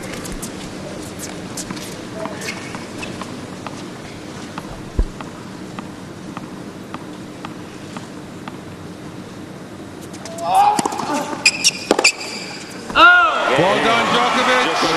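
A tennis ball being bounced repeatedly on a hard court before a serve, a regular faint tapping over the steady hum of a hushed arena crowd. Near the end come a few loud sharp hits and a loud shout.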